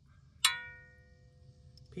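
A single sharp metallic clang about half a second in, ringing on for more than a second as it fades: a loose steel part, such as the freed bolt or the wrench, striking metal.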